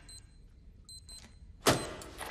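A shoe stomps down on a plastic toy wristwatch on a concrete floor, crushing it with one sharp crunch near the end.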